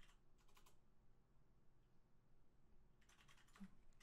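Near silence with faint computer keyboard typing: a few light key clicks just after the start, then a quicker run of clicks near the end.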